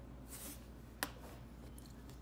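Hands handling metal ballpoint pens: a faint rustle, then one sharp click about a second in.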